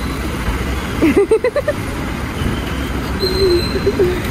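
Steady rumble of road traffic and vehicles, with a person's voice calling out briefly about a second in and again near the end.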